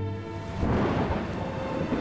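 Sound effect of a thunderstorm with heavy rain, swelling in about half a second in, over a sustained low musical drone.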